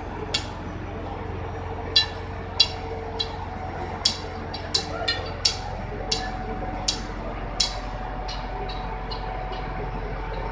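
Metal being struck over and over, irregular sharp clinks that each ring briefly, about one or two a second, the last few fainter, over a steady low machinery hum.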